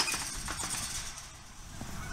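A steel tube farm gate being handled: a sharp clank at the start, then light rattling and shuffling on dirt and straw.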